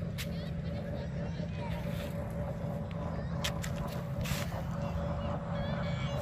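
Jet ski engine out on the lake, a steady drone with a constant whine over a low rumble, with a couple of brief clicks about three and four seconds in.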